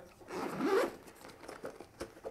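The zipper of a Magpul DAKA Takeout soft case being pulled open in one quick run of under a second, followed by faint handling noise as the case is opened.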